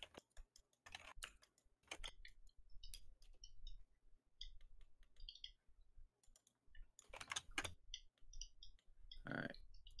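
Faint, irregular clicking of a computer mouse and keyboard, with a denser, louder run about seven seconds in.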